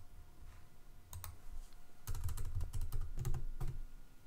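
Computer keyboard typing: a few sharp clicks about a second in, then a quick, irregular run of keystrokes from about halfway through.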